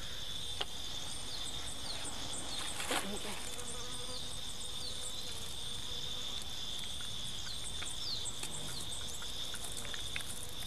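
Forest insects droning steadily on one high note, with short falling chirps above it. A sharp knock comes about three seconds in, and a smaller click just before.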